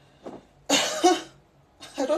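A woman coughs once, a loud cough a little under a second in, with a short faint sound just before it.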